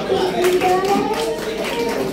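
Scattered hand clapping from a small audience, quick irregular claps starting about half a second in, over a child's voice amplified through a microphone.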